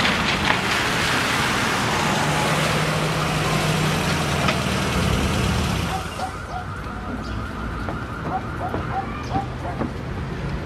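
A vehicle driving slowly along a wet street, a steady engine hum under tyre hiss, for about six seconds; then the sound drops to a quieter, steady hum with faint high chirps.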